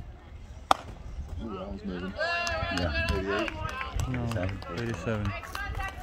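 A single sharp crack from a pitched baseball striking, about a second in, followed by several seconds of voices calling out.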